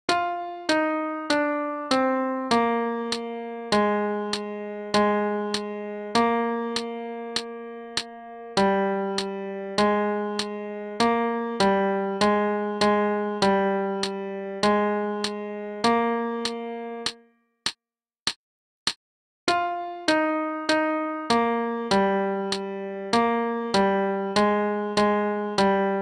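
Piano-like keyboard playing the alto saxophone part's melody one note at a time, each note struck and then fading, over a steady metronome click. About two thirds of the way through the melody stops for about two seconds, leaving only the clicks, then carries on.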